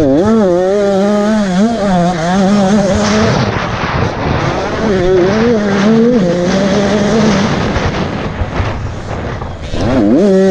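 Enduro motorcycle engine running hard as the bike is ridden around the track, its pitch rising and falling as the throttle is worked. It revs up sharply near the end, after easing off for a couple of seconds.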